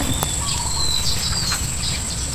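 Wild birds calling outdoors: a few short, thin, high whistled notes, some held level and some falling, over a steady high-pitched insect drone and a low rumble on the microphone.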